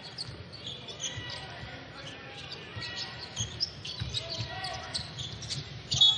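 A basketball being dribbled on a hardwood court in a large arena, with a low thud roughly every half second, short high squeaks from sneakers, and a faint crowd murmur behind.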